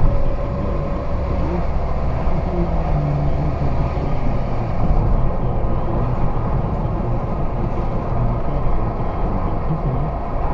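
Steady engine and tyre rumble of a car driving at speed, heard from inside the cabin.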